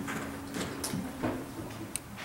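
Microphone handling noise: a few short clicks and knocks as a vocal mic on a boom stand is gripped and adjusted, over a low steady tone in the first half.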